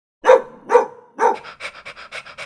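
A dog barking three times, about half a second apart, then panting quickly.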